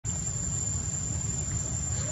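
A steady high-pitched insect drone, one unbroken tone like a cricket chorus, over a constant low rumble.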